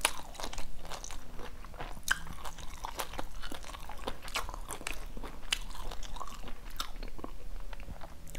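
Close-miked chewing of crispy fried Vietnamese spring rolls (chả giò) wrapped with fresh lettuce and herbs: a steady run of irregular crunches and wet mouth clicks.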